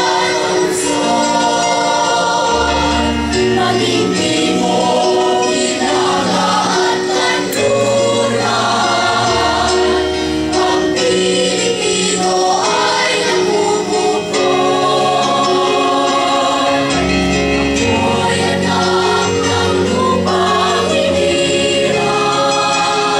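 Mixed choir of men and women singing in parts, holding long chords that shift from note to note, with deep low notes coming in under them at intervals.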